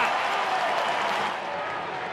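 Stadium crowd cheering and applauding just after a goal, the noise slowly dying away.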